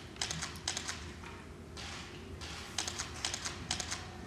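Several short runs of rapid, sharp clicks, with a brief scratchy patch about halfway through.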